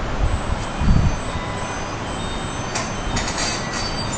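Steady rumbling background noise of a room, with a swell about a second in and a few short clicks about three seconds in.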